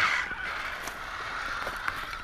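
Radio-controlled rock crawlers (Axial Wraith and Vaterra Twin Hammers) running over rock and dry leaves: a steady drivetrain whine with light scrapes and a couple of small clicks.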